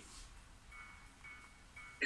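Near silence: room tone, with three faint short tones about half a second apart, like a soft chime or a snatch of music.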